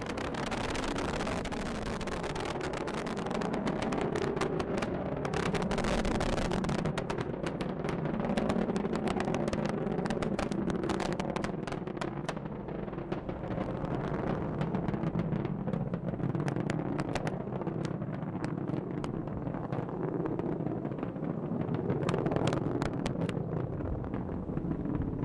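Falcon 9 rocket in powered ascent under its first-stage Merlin engines: a steady, loud roar with a dense crackle running through it.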